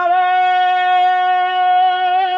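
A man's voice holding one long, steady, loud note: the drawn-out call of a slogan being led at a rally, before the crowd answers.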